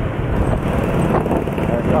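Wind rushing over the microphone with a motorcycle's engine hum and road noise while riding in traffic.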